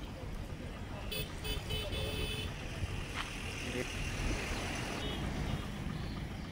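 Outdoor road ambience: a vehicle running, with a few short horn toots between about one and two and a half seconds in, over a steady background rumble.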